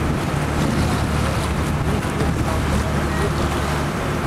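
A boat's engine running steadily under way, a low drone with the wash of water and wind buffeting the microphone.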